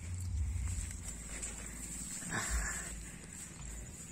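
Footsteps and rustling through rice plants, with a low rumble of wind on the microphone and a steady high whine throughout. A louder rustle comes about two and a half seconds in.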